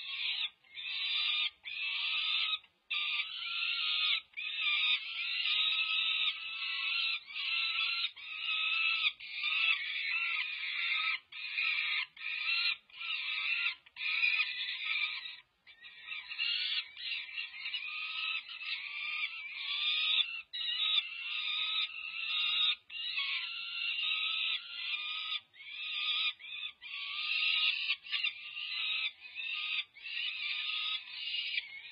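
Peregrine falcon chicks, about five weeks old, giving harsh, raspy food-begging screams at a feeding. The calls come in an almost unbroken chain of short bursts with only a couple of brief pauses.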